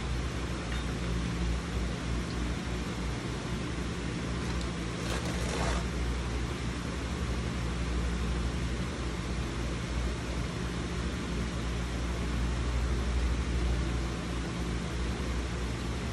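Steady low mechanical hum with a constant hiss, like a running fan, and one brief burst of noise about five seconds in.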